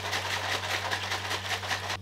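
Protein shake being shaken hard in a plastic shaker bottle: a rapid, even run of sloshing strokes, about five a second, which cuts off suddenly.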